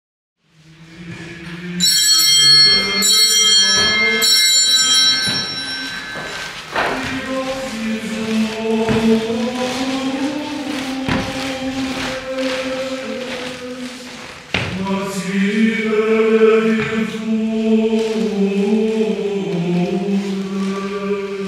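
Voices singing a slow liturgical chant together, holding long notes that step slowly from pitch to pitch, with a fresh entry about two-thirds of the way through. Bright, high ringing tones sound over it in the first few seconds.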